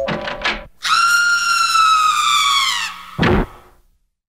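A long, high whistle-like tone, held for about two seconds and sagging slowly in pitch, followed by a single thump, after which the sound fades out.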